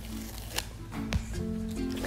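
Background music with steady, sustained notes, and two short clicks near the middle.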